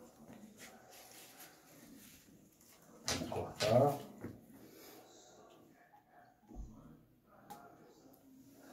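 A quiet small room with one short human vocal sound, about three to four seconds in, and a soft low bump about six and a half seconds in.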